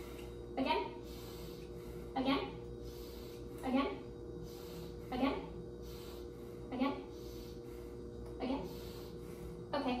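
A woman's voice saying one short word about every second and a half, the repeated prompt for another deep breath while lungs are listened to with a stethoscope. A steady low two-tone hum runs underneath.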